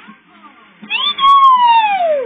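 A long, high-pitched call that starts about a second in and falls steadily in pitch, like an animal's cry.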